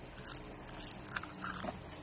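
A person chewing crispy lechon (roast pig) skin close to the microphone: a run of irregular crunches.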